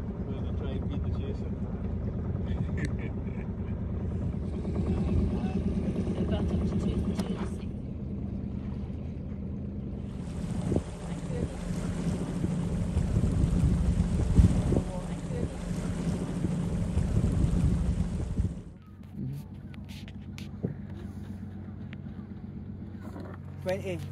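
A sailing yacht's inboard engine running steadily under way, a low even hum. There is extra hiss from about ten seconds in, and the engine drops to a quieter hum a few seconds before the end.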